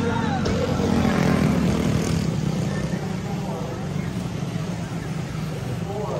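A pack of quarter midget race cars with small single-cylinder Honda four-stroke engines running through a turn: a steady engine drone, a little louder in the first couple of seconds, with voices in the background.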